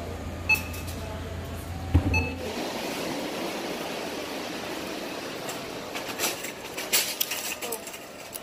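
Steady hum of a store interior that cuts off about two and a half seconds in as the walker passes through the entrance, giving way to an even outdoor background noise. Footsteps and a few sharp clicks come near the end.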